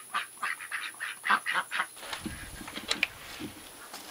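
A flock of ducks quacking: a quick run of short, repeated calls over the first two seconds, then quieter.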